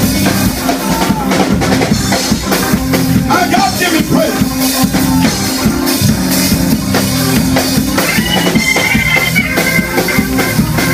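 Loud live band music: a drum kit keeping a steady beat over a bass line, with a high held note coming in near the end.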